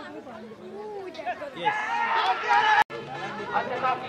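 Several people's voices talking and calling out over one another. About halfway through they rise into loud shouting, and the sound cuts out for an instant just before the three-second mark.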